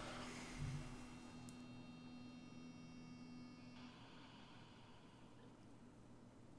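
Near silence: faint room tone with a soft thump just under a second in, and faint steady tones that cut off about four seconds in.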